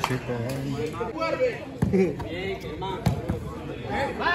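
A football being kicked on a small turf court: a couple of sharp thuds, about two and three seconds in, among players' shouts.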